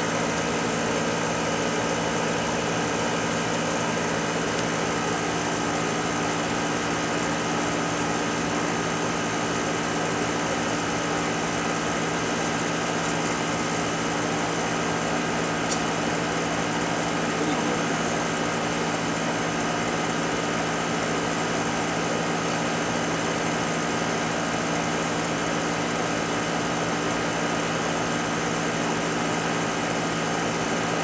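A small motor running steadily with an even, multi-toned hum, and a single sharp tick about 16 seconds in.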